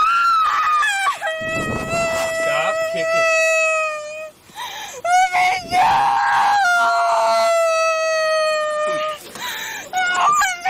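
A young woman crying and screaming in long, high, drawn-out wails, two of them held for several seconds each, with shorter cries between, as she struggles against being restrained.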